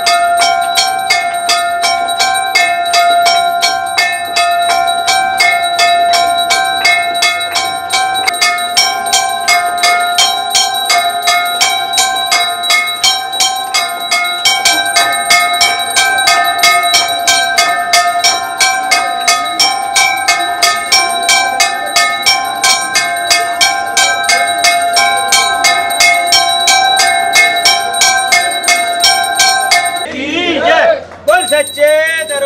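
Temple bells ringing continuously in a fast, even rhythm during an aarti lamp offering, each strike leaving a lingering metallic ring.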